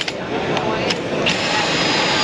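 Cordless drill in a Camo stand-up deck screw driving tool running, starting about two-thirds of the way in: it drives a wood face screw down into a deck board with a steady high whine.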